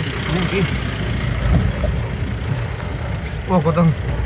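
A vehicle engine running steadily, heard from inside the cab, with people talking in short bursts over it, loudest near the end.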